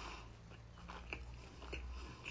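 Close-miked mouth sounds of someone chewing food with the mouth closed, with a few soft wet clicks in the second half.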